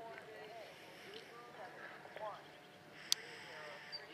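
Faint, distant voices talking in the background, with a single sharp click about three seconds in.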